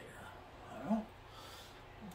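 Low steady hum of room fans, with one brief voice-like sound about a second in that rises and falls in pitch.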